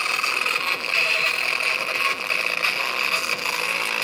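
A small speaker driver playing loud, with several PKCELL AA batteries buzzing and rattling as they bounce on its cone.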